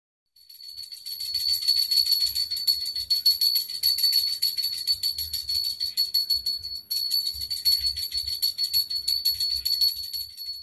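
Puja hand bell rung rapidly and continuously: a high, steady ring with quick, even clapper strikes. It breaks off for a moment about seven seconds in, then goes on.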